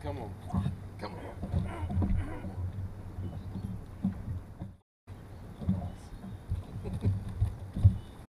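A man's voice muttering "come on" while playing a fish, over a steady low rumble and scattered knocks of movement on a boat deck, with a short break where the sound cuts out.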